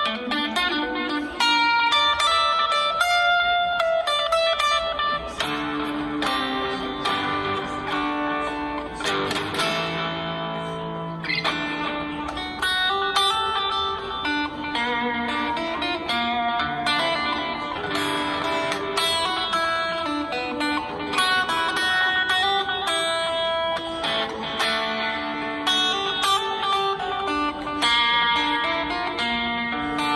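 Music Man electric guitar playing a blues instrumental: picked single notes and chords ringing one after another.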